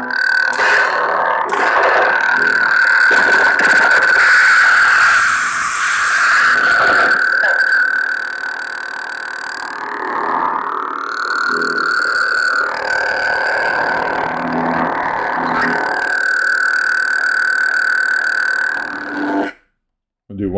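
CFX lightsaber soundboard playing a sound font through a 28mm speaker: a steady, super loud blade hum with surges as the saber is swung. It cuts off abruptly shortly before the end as the blade shuts off.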